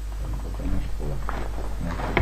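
A person's voice making low, wordless vocal sounds close to the microphone, starting about a quarter second in, over a steady low hum.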